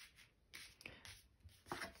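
Near silence, with a few faint rustles of tarot cards being slid and picked up from a cloth.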